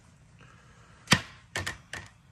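A metal spoon knocking against the dishes while scooping food: one sharp knock about a second in, then a quick double knock and a smaller one near the end.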